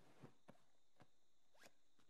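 Near silence broken by four faint, quick swishes: bedclothes rustling and small handling sounds as a child sits up in bed and takes a small box from under the covers.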